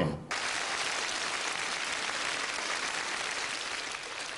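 Studio audience applauding: an even, steady clapping that starts suddenly just after the start and eases slightly toward the end.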